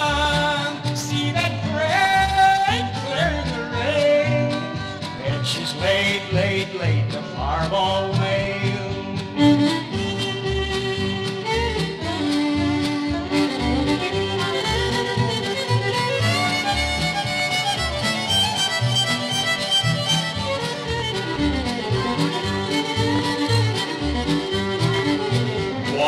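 Instrumental break of a 1960s country song: a fiddle plays the lead with sliding notes, over a steady bass and rhythm-guitar beat. Echo has been added by Capitol's Duophonic fake-stereo processing.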